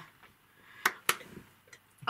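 Two short, sharp clicks about a quarter of a second apart, against quiet room tone.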